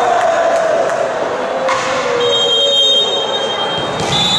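Sports-hall crowd noise during a volleyball match: a long wavering, drawn-out tone from the spectators, a single sharp smack a little under two seconds in, then a steady shrill whistle-like tone for about a second and a half.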